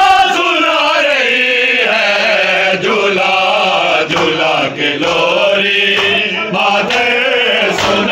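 A group of men chanting a noha, a Shia mourning lament, loudly and in unison, the voices rising and falling in a continuous sung line.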